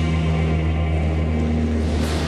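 Twin turboprop engines of a Bombardier CL-415 Super Scooper water bomber, droning steadily and low.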